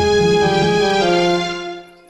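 Finale notation software's digital orchestral playback of a concert overture score: sustained orchestral chords, changing chord about a second in, then fading away as playback is stopped.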